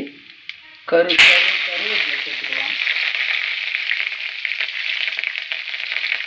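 Chopped green chillies dropped into hot oil in a kadai about a second in, setting off a sudden loud sizzle that settles into steady frying.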